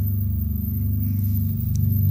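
A low, steady sustained drone, the kind of sombre background score laid under a documentary interview, heard in a pause between spoken words.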